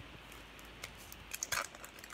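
Baseball card pack wrapper crinkling softly as it is peeled open by hand, with a few sharper crackles about a second and a half in.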